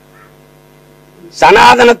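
Faint steady electrical mains hum during a pause in a man's speech. His voice comes back about one and a half seconds in.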